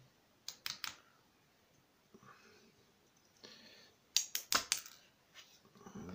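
Small sharp clicks and taps of tweezers and lock pins as a lock cylinder is taken apart and its pins are set into a plastic pin tray: three quick clicks about half a second in, then a fast cluster of clicks a little after four seconds.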